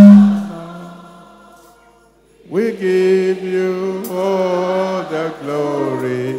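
A man singing a slow worship chorus into a microphone. A long held note fades out just after the start, then after a short pause a new sung phrase begins about two and a half seconds in and carries on with a second phrase near the end.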